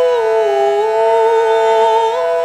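A woman singing a long held vowel over the ringing drone of a brass singing bowl rubbed around its rim with a wooden stick. Her note dips in pitch about half a second in and rises back near the end, while the bowl's tone stays level.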